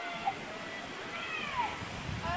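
Distant children's voices outdoors, with one drawn-out high call falling in pitch about a second and a half in.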